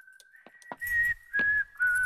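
A person whistling a tune: from about a second in, three clear notes stepping down in pitch, each held about a third of a second, with soft thumps between them.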